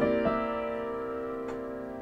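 A piano chord held after the last sung note, ringing and slowly dying away, with one soft added note just after it begins.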